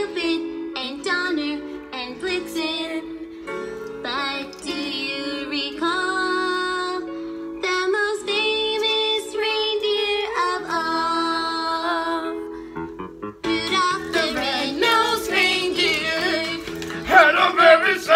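Girls singing a pop song into a handheld karaoke microphone over a sustained accompaniment, the voices rising and falling in pitch; the singing grows loudest near the end.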